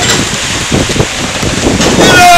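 Steady rain falling on the ground and surfaces around, with uneven low rumbles of wind buffeting the microphone.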